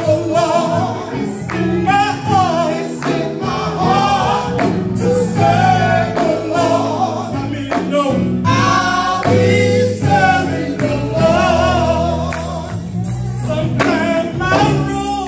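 Live gospel music: lead vocalists singing into microphones, backed by an electric bass guitar and drums.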